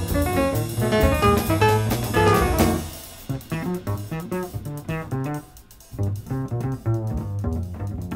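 Small-group jazz recording played back from a vinyl LP. The full band plays, then about three seconds in it drops to a quieter, sparser passage with the double bass to the fore.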